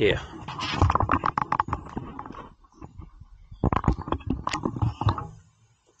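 Handling noise of a handheld camera being moved about, mixed with an indistinct, unworded voice. It comes in two bursts, one over the first two seconds or so and another about four to five seconds in.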